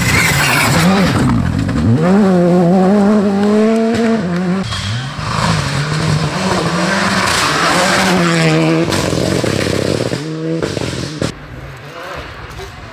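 Rally cars at full throttle on a gravel stage, one after another. Their engines rev high and drop sharply with each gear change, over tyres sliding on loose gravel.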